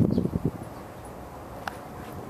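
Soft, irregular thumps and rustling in the first half second, like footsteps on garden mulch, then a faint steady outdoor background with one short, sharp click near the end.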